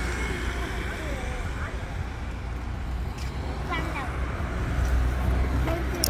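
Road traffic rumbling steadily, growing louder about five seconds in, with faint voices over it.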